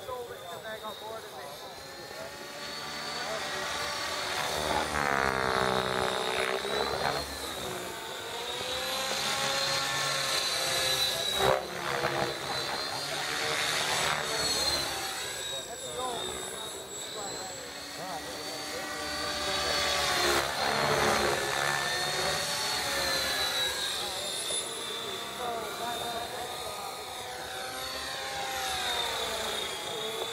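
Align T-Rex 600E electric RC helicopter in flight: a high whine from its motor and drivetrain over the buzz of the rotor blades. The pitch sweeps up and down as it manoeuvres and passes, louder on the close passes, with one brief sharp spike a little before the middle.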